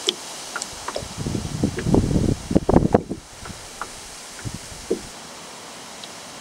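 Wind gusting across the microphone: a rumbling, uneven rush for about two seconds in the middle, with a few faint scattered clicks around it.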